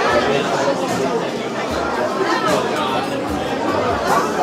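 Crowd chatter from diners at packed tables: many voices talking over one another in a steady babble, with no single voice standing clear.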